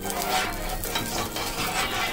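Butter sizzling as it melts in a hot nonstick pan, with a steel spoon stirring and spreading it across the pan's surface in short, repeated strokes.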